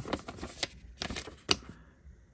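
Paper instruction sheet rustling and crinkling as it is handled and turned over, with one sharp crackle about one and a half seconds in.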